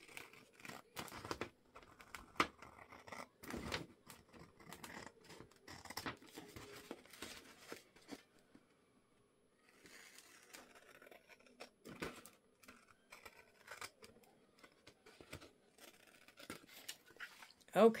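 Scissors snipping through a book page and paper, with irregular cuts and paper rustling and a short pause about halfway through.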